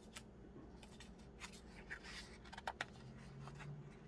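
Faint paper rustling and light ticks from hands handling a softcover coloring book, with a page being lifted to turn near the end.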